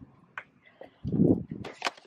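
Handling noise from a camera being swung quickly: a short, loud rush about a second in, followed by a few sharp clicks.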